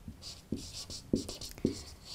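Marker pen writing on a whiteboard: a quick series of short strokes and taps as letters are written.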